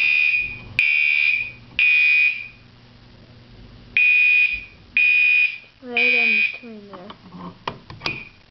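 Fire alarm sounder going off in the temporal-3 evacuation pattern: three short, buzzy, high-pitched blasts about half a second apart, a pause, then three more. It was set off by opening the T-bar pull station.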